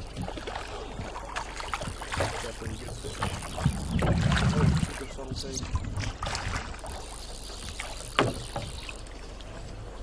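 Water sloshing around a drift boat, with scattered knocks and clunks from the oars and gear in the hull. There is a low rumble about four seconds in and a sharp click about eight seconds in.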